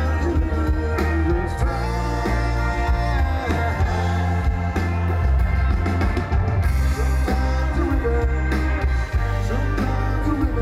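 Live rock band playing an instrumental passage: electric guitar, electric bass, keyboard and drum kit, with a strong, steady bass line under frequent drum hits.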